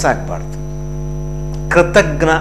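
Steady electrical mains hum with a stack of evenly spaced overtones, running under a pause in a man's speech. His voice trails off just after the start and comes back near the end.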